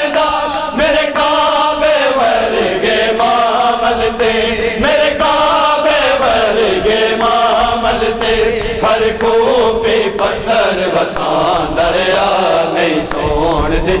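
A group of men chanting a noha, a Shia lament, together in long held and sliding notes, with a steady rhythm of matam, hands beating on chests, keeping time under the voices.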